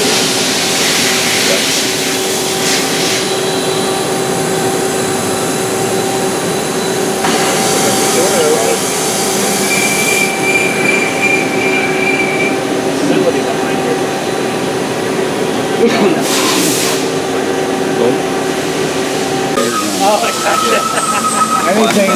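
Machine-shop noise from a running CNC lathe: a loud steady hum with several held whining tones, with bursts of hissing coolant spray near the start, about a third of the way in and about three-quarters through. A brief higher whine sounds just under halfway.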